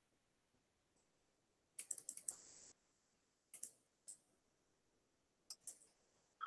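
Faint clicking at a computer: a quick cluster of clicks about two seconds in, then a few short single clicks and a pair near the end, over near silence.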